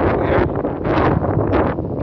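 Wind blowing across the microphone, loud and gusty, with a deep rumble.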